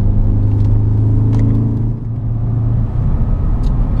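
Porsche Cayenne Turbo's twin-turbo V8 heard from inside the cabin under hard driving on a race track. Its note holds steady for about two seconds, then dips briefly and comes back rougher, with road and tyre noise underneath.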